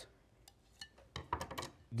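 Faint taps and clinks of plates as grilled sandwiches are lifted and set down on them, a few scattered knocks in an otherwise quiet moment.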